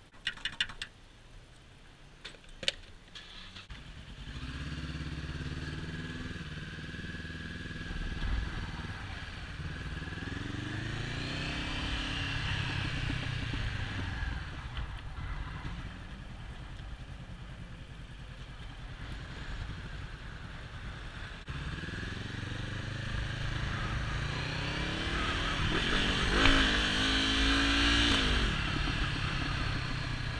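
A few light clicks, then the Honda CB500F's parallel-twin engine comes in about four seconds in and runs at low revs before the motorcycle pulls away, its pitch rising as it accelerates twice, the second time loudest.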